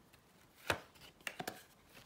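Tarot cards being handled: one sharp tap against the table, then three quick lighter clicks.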